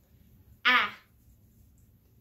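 A woman voicing a single isolated phoneme, the short 'a' sound /æ/ for a lowercase letter card, once and briefly about two-thirds of a second in.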